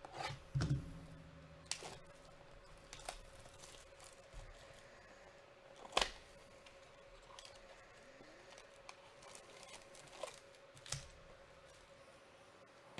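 Clear cellophane shrink-wrap being torn and crinkled off a sealed trading-card hobby box, heard as scattered sharp crackles and taps with a few low knocks of the box. The loudest crackle comes about halfway through, over a faint steady hum.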